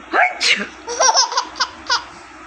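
Baby laughing and squealing: a rising squeal near the start, then a quick run of short laughs in the second half.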